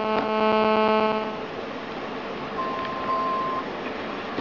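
Mobile phone ringing with a buzzy electronic ringtone that stops about a second and a half in as the call to the robot's phone goes through. Later comes a single steady beep lasting about a second, a keypad tone over the call of the kind the robot is driven by.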